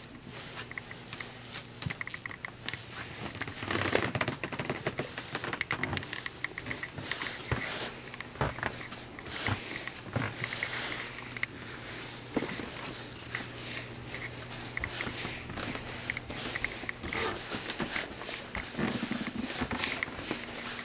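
Irregular rustling, shuffling footsteps and small knocks close to the microphone as a handheld camera moves through the bookstore, over a steady low hum. A brief louder bump about four seconds in.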